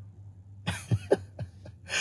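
A man makes a handful of short, quick throat sounds, about five within a second, starting a little after the first half-second.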